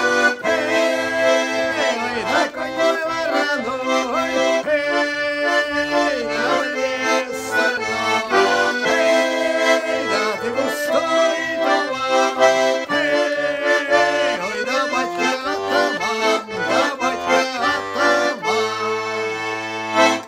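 Tula four-voice garmon (Russian button accordion in C major, four reeds sounding per note) playing a folk tune, melody on the right hand over a rhythmic bass-and-chord accompaniment on the left. The playing stops abruptly at the very end.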